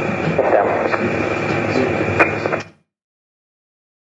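Steady noisy background of the pilot–air traffic control radio recording, with a thin high whine running through it and a sharp click about two seconds in. It stops abruptly a little before three seconds in, leaving dead silence.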